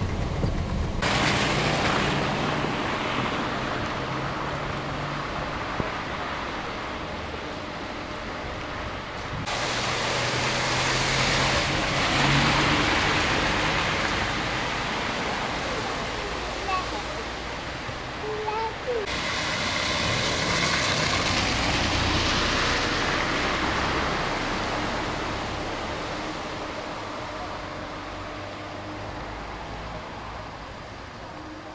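Car driving through flooded streets: a steady rush of water spray from the tyres over a low engine hum, swelling and fading, changing abruptly about a second in, about nine seconds in and about nineteen seconds in.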